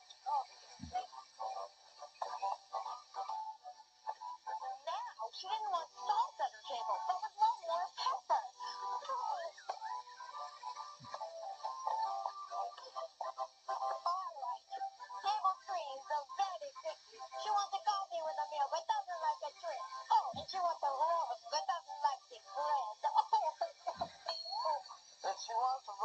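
Young cast singing a song together over musical accompaniment, the sound thin and narrow as played through a television's speaker.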